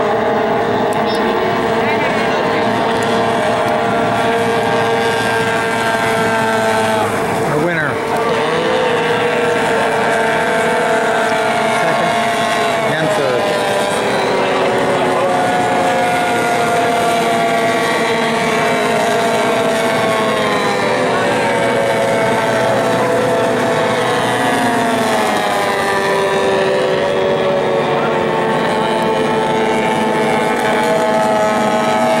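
Outboard motors of several small racing hydroplanes running at full throttle, a steady mix of high engine whines at once. The pitches dip about a quarter of the way in and slide downward again around two-thirds through as boats pass.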